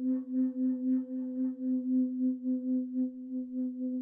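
A meditation bell's long ringing tone, wavering in loudness about four times a second as it slowly dies away.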